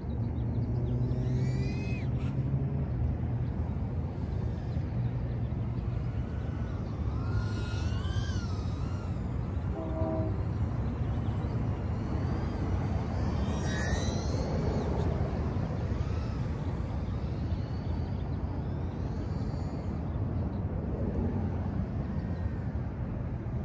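Micro FPV quadcopter's BetaFPV 1102 13500kV brushless motors with 40 mm tri-blade props, heard faintly in flight as a thin whine that rises and falls in pitch with throttle changes, over a steady low rumble. A brief tone sounds about ten seconds in.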